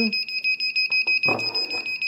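FPV quadcopter's piezo buzzer beeping in a rapid, even series of high-pitched beeps on one unchanging tone. It is sounding on the quad's first power-up, a sign that the flight electronics have power.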